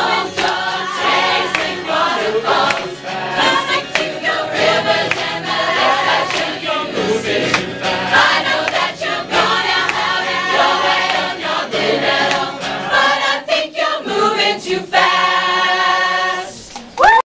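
A large group choir of many mixed voices singing a pop song together in harmony.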